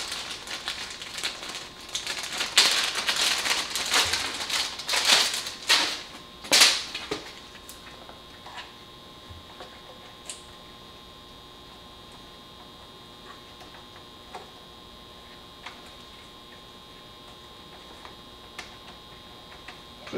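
Plastic parts bag crinkling and rustling as it is handled for about the first seven seconds, with a few louder crackles. After that only a few faint, scattered clicks over a low steady hum.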